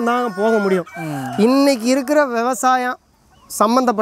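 A large flock of UP-cross country chickens clucking, with a rooster crowing. The sound cuts off about three seconds in.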